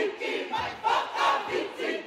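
A large group of men and women chanting a Māori haka in unison, with short, forceful shouted phrases in quick succession.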